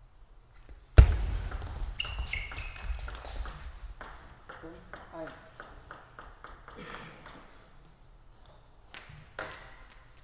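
Table tennis point ending with one loud sharp hit about a second in, followed by the plastic ball bouncing and clicking repeatedly on the floor and table, the bounces fading as it settles. Two further light ball clicks come near the end.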